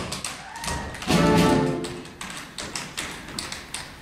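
Tap shoes striking a wooden stage floor in quick runs of sharp taps, over sparse backing music. A brief loud musical chord comes about a second in.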